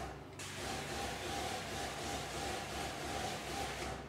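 Hand spray wand fed by a 100 PSI pump misting sanitizer: a steady hiss that starts about half a second in.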